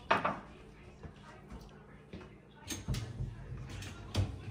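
Dishes clinking as clean dishes are put away from an open dishwasher into the cabinets: faint scattered clinks, with a short louder clatter about three seconds in.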